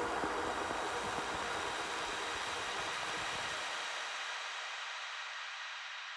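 The closing psytechno track fading out on the DJ mixer: the beat thins and the bass drops away about four seconds in, leaving a hissing noise wash that keeps dying down.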